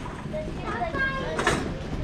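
Voices talking in a warehouse store, with a single sharp clatter about one and a half seconds in.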